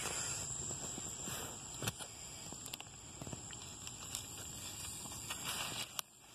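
Scattered rustles and light knocks of a pineapple plant being handled as a stick is set beside its leaning fruit to prop it up. Underneath runs a steady high-pitched drone of cicadas.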